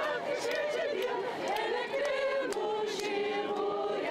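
A group of women singing together as they march, their voices gliding between notes and holding longer notes in the second half.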